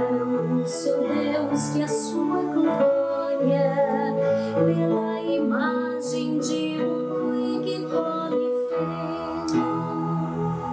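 A woman singing a Portuguese psalm verse over sustained chords from a Yamaha electronic keyboard, in A major.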